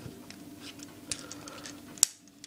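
Light plastic clicks and rattles from a Transformers action figure handled in the hands, as a leg piece that came apart at the knee is fitted back on.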